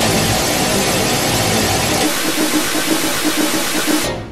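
Black MIDI playback: tens of thousands of synthesized piano notes a second, played through a Casio LK-300TV soundfont, merging into a dense, noise-like wall of sound. About halfway through, the bass thins out and a pulsing mid-pitched tone comes through. The sound stops at the very end.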